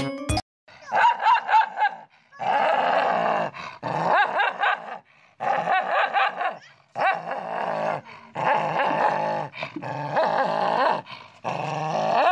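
A few notes of music cut off about half a second in. Then a dog snarls, growls and barks aggressively in repeated bouts of about a second each, at its own reflection in a mirror.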